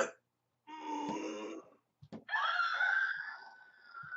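A man's voice making two long wordless vocal sounds, the second held for over a second, cries of excitement at something he finds too good.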